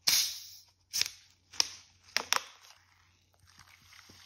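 Carbonated plastic soda bottle being opened: a loud hiss of escaping gas that fades over about a second, then four sharp clicks as the screw cap is twisted off. Near the end, fizzing cola starts pouring into a plastic tray.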